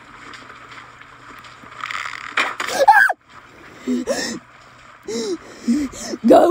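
A woman's distressed gasps and short cries over a steady background hiss, with a burst of sharp noise about halfway through.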